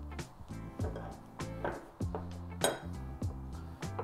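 Background music playing, with light knocks and one sharp ringing clink about two and a half seconds in, as a piping bag with a metal nozzle is set down on a small ceramic plate.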